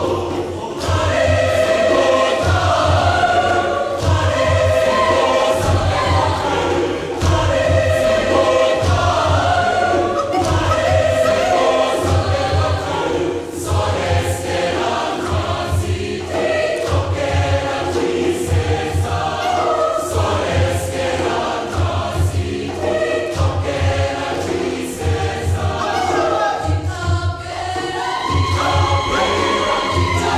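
Youth choir singing a Damara/Nama song in several-part harmony, with a steady low beat pulsing underneath.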